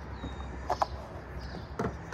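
Quiet outdoor background with a steady low hum and a few faint, brief sounds: a couple a little under a second in and one near the end.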